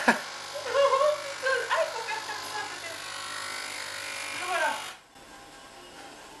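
Capsule coffee machine's pump buzzing steadily as it brews after its button is pressed, then cutting off suddenly about five seconds in.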